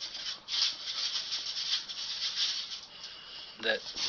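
A dog moving about and hunting through fallen leaves, an uneven scratchy rustle in short bursts.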